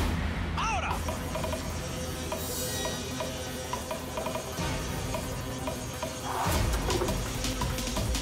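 Background music with sustained tones, with a heavier bass beat coming in about two-thirds of the way through.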